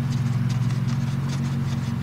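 Light, irregular clicks as a bolt is loosened and unscrewed from the power steering line fitting on the pump, over a steady low hum.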